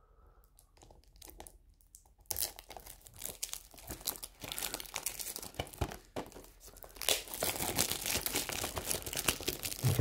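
Cellophane shrink-wrap being picked at and torn off a plastic Blu-ray case, crinkling and tearing. Almost nothing for the first two seconds, then steady crackling that gets louder about seven seconds in.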